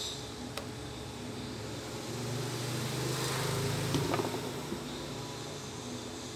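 A passing road vehicle: a low rumble with hiss that swells about two seconds in, peaks midway and fades away, over a steady faint background hum. There are a couple of light clicks.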